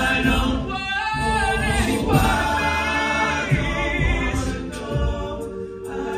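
Male a cappella group singing live into microphones: a lead voice with gliding melody lines over sustained backing harmonies and a low bass line, all voices with no instruments.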